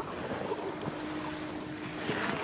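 Wind rushing over the microphone, a steady noise with a faint, even hum beneath it.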